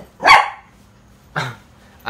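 A man coughing: a harsh cough just after the start and a shorter one about a second later.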